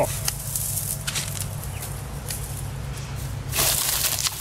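Dry cauliflower seed stalks rustling as they are snipped and handled, with a few light clicks and a louder rustle near the end, over a steady low background hum.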